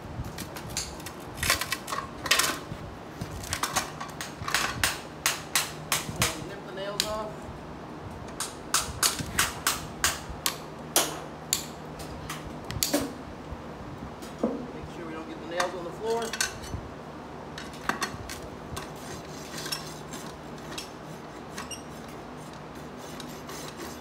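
Farrier's hand tools on the nails of a newly shod horse hoof: a run of sharp metallic taps and snaps as the protruding nail ends are cut off and clenched over. The taps are thickest in the first half and thin out later.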